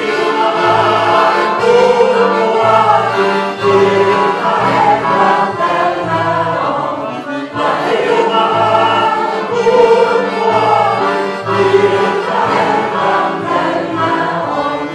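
A congregation singing a hymn together, with an instrument accompanying and a bass note sounding about once a second.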